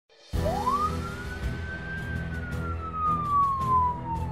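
A police siren giving one slow wail: it starts suddenly, climbs steeply in pitch during the first second, then falls slowly for the rest of the time.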